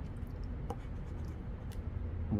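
A coin scraping the coating off a scratch-off lottery ticket, a soft, even scratching with a couple of small clicks.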